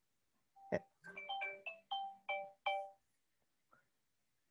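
A faint click, then a short electronic ringtone melody: about seven quick chiming notes stepping in pitch over roughly two seconds.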